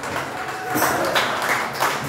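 A few sharp taps or knocks, about a second in and near the end, over a murmur in the hall while the music has stopped.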